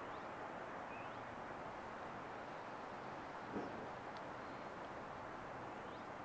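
Hushed outdoor golf gallery standing silent over a putt: a steady faint hiss of open air, with a few faint bird chirps and one soft knock about three and a half seconds in.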